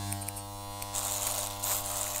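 Electric hair clipper buzzing steadily, with a brighter hiss joining about a second in.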